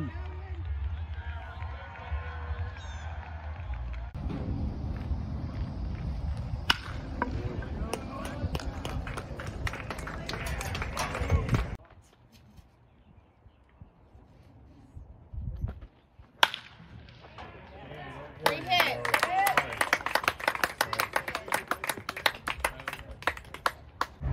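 Baseball bat hitting a pitched ball: a single sharp crack about 16 seconds in, after a quiet stretch. Spectators then shout and cheer loudly, with clapping, for the last several seconds.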